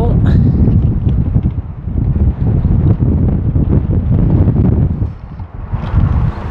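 Gusting wind buffeting the microphone: a loud, uneven low rumble that eases briefly near the end.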